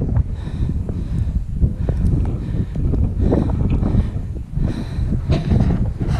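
Wind buffeting the camera microphone in uneven low gusts, with footsteps on the stony trail.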